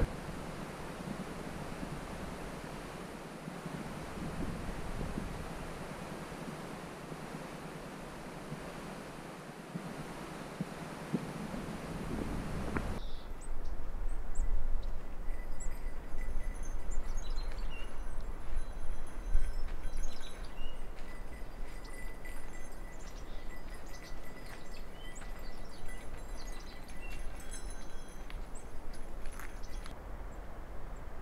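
Outdoor breeze: an even rush of wind. About thirteen seconds in, it changes abruptly to low wind rumble on the microphone with faint, scattered high chirps and ticks.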